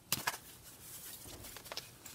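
Large oracle cards being shuffled and spread by hand: a couple of light card taps just after the start and another near the end, with soft rustling of the card stock between.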